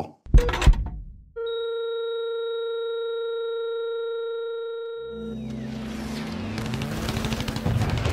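Electronic soundtrack: a single thud just after the start, then a steady electronic beep tone held unbroken for about four seconds, cutting off as a low, dark electronic drone with a held bass note swells in.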